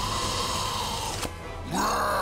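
Cartoon soundtrack music and effects: a held high tone over a noisy bed breaks off just over a second in, and a loud new sound swells up, rising in pitch, near the end.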